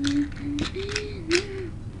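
Plastic clicking and rattling from a Beyblade ripcord launcher being handled and ratcheted, several sharp clicks. A steady low wavering tone runs underneath.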